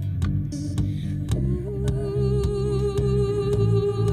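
Looped acoustic guitar riff over a low bass line, with regular percussive taps. About a second and a half in, a long hummed note comes in and is held steady over the loop.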